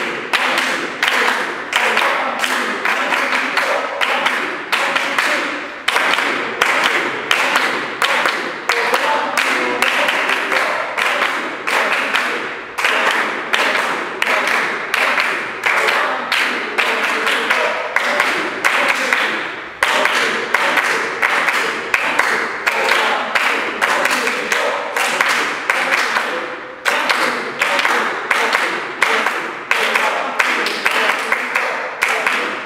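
Group hand-clapping in a steady, even beat, about two to three claps a second, with short breaks in the beat; each clap rings briefly in the room.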